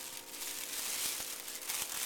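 Thin plastic shopping bag rustling and crinkling as it is rummaged through, with a few small clicks.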